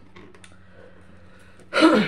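A woman clears her throat, loud and abrupt, near the end after a quiet stretch with a few faint clicks.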